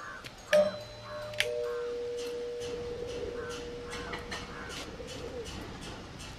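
Birds calling over and over, several short calls a second, with a long held note that starts about half a second in and fades near the end. Two sharp clicks come in the first second and a half.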